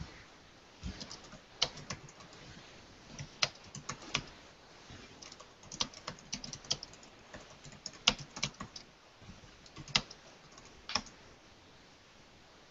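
Typing on a computer keyboard: irregular, uneven keystrokes with a few sharper clicks among them.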